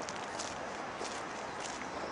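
Footsteps walking on snowy ground, a step roughly every half second.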